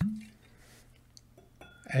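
Light handling sounds of a whisky bottle and glass: a few faint clicks, and a brief thin squeak a little more than halfway through. A short hummed voice sound comes at the very start.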